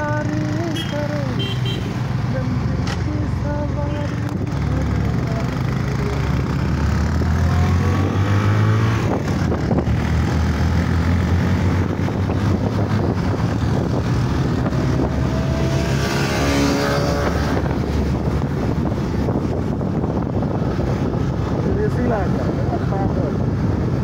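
Motorcycle engine running with wind noise while riding, the engine note swelling and rising about eight seconds in.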